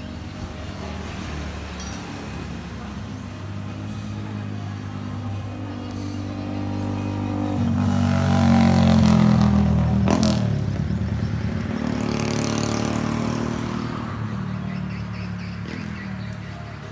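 Yamaha motorcycle engine running through an aftermarket exhaust. It swells louder with rising pitch to a peak about eight to ten seconds in, then eases back down. A sharp click comes about ten seconds in.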